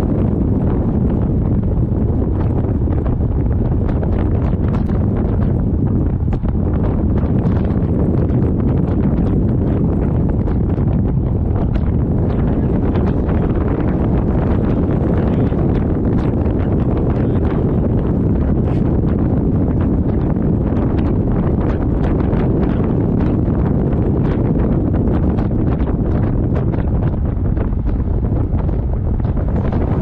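Wind buffeting the microphone of a handheld camera held at a moving car's window: a loud, steady rush that is deepest in the low range.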